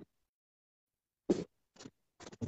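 A man coughing from a cold that has left him with a lingering cough: one sharp cough a little over a second in, then a shorter, fainter one.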